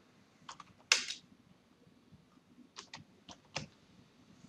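A few separate keystrokes on a computer keyboard. There is a single click, a louder one about a second in, then three or four quick clicks spread over the last second and a half.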